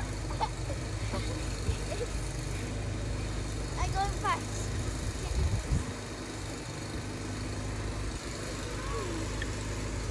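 A few short, high children's calls while they play on a snowbank, the clearest about four seconds in and another near the end, over a steady low rumble.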